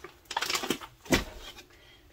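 Brown paper bags of bulk food being handled and set down on a counter: a few short rustles and knocks, the loudest a dull thump just after a second in.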